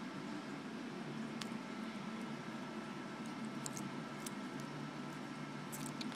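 Quiet room tone with a few faint, light clicks scattered through it: the small metal implements of a Leatherman Micra keychain multitool being handled and unfolded.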